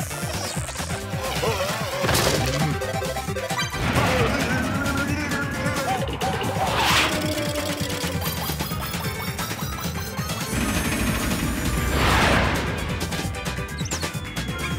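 Cartoon soundtrack: music with slapstick sound effects, and several loud crash-like hits spread through it.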